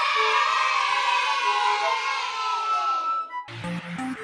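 Soundtrack of a crowd cheering sound effect that slowly falls away, cut off about three and a half seconds in by electronic dance music with a steady beat.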